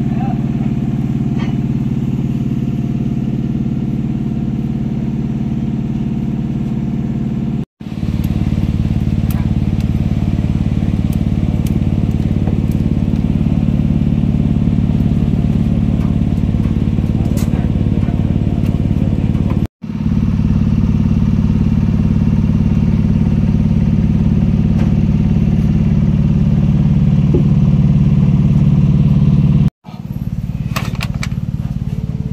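Machinery running steadily with a loud, low, even hum that grows a little stronger in the second half; the sound cuts out abruptly for an instant twice.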